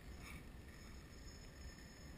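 Near silence: faint steady background noise with a low rumble and no distinct sound event.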